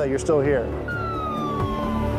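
Ambulance siren wailing: one long tone that starts about halfway through and glides steadily down in pitch, over background music, after a brief fragment of a man's voice at the start.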